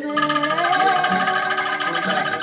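A small group singing a song in unison to a strummed acoustic guitar, the voices holding and sliding between notes over the even strokes of the guitar.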